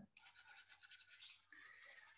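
Faint, rapid scratching, the sound of a pen stylus rubbed back and forth on a drawing tablet while erasing handwritten marks. The texture shifts slightly about halfway through.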